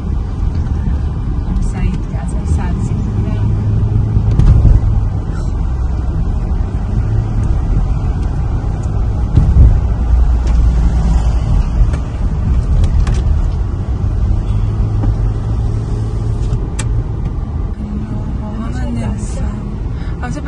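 Car engine and tyre rumble heard from inside the cabin while driving along a city street, a steady low drone with small swells in loudness.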